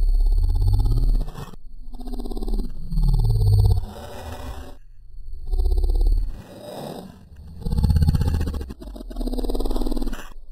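Deep, heavily distorted growling sound effect that comes in about five swells a second or two apart.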